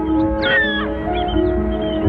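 Background music with held notes. A gull's harsh call falls in pitch about half a second in, and shorter, higher gull calls follow.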